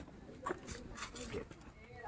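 Faint, scattered voices of people talking at a distance, with a few small clicks and knocks, at a low level.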